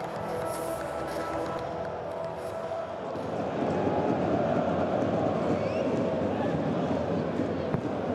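Steady background music, then from about three seconds in the dense noise of a packed football stadium crowd, which gets louder.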